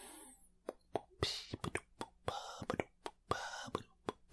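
An irregular string of soft clicks, about four a second, mixed with short breathy hisses, made by a person's mouth close to the microphone.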